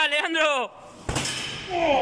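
A single heavy thump of a hard hit about a second in, between shouts of encouragement.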